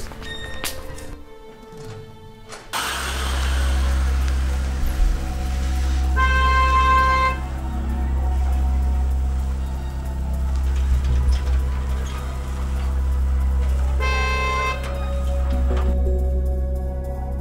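Car horn sounding twice, each blast about a second long: once about six seconds in and again near the end. Background music with a steady low drone runs underneath.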